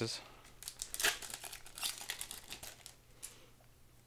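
Foil wrapper of a Japanese Pokémon card booster pack crinkling and tearing as it is ripped open, a quick run of crackles that stops about three seconds in.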